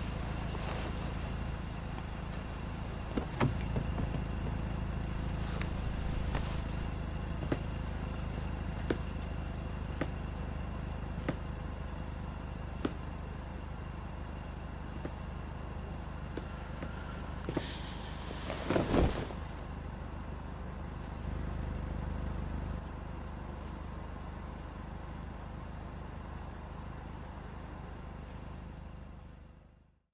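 Street ambience with car traffic from a music video's night scene: a steady low rumble with scattered light ticks, a louder noisy swell about 19 seconds in, then a fade-out near the end.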